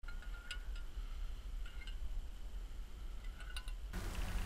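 Low, steady rumble on a body-worn camera's microphone, the sound of wind and movement outdoors, with a few faint clicks and brief faint chirps about half a second in, near two seconds and near the end.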